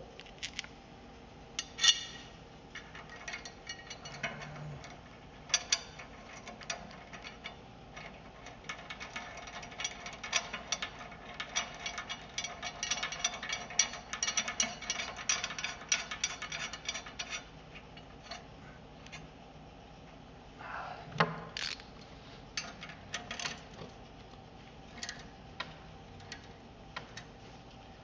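Ratchet wrench clicking in rapid runs while the bolt of a new mower blade is run down onto the deck spindle, with a few sharper metal clinks and knocks from the tools and blade.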